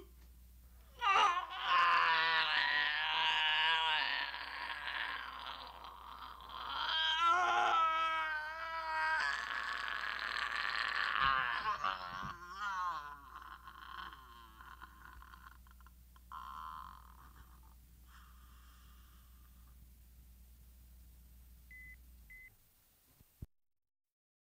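An actor screaming and wailing in character as a possessed ghoul, a high voice that wavers in pitch for about ten seconds, then trails off into fainter moans. Near the end come two short beeps, and then the sound cuts off.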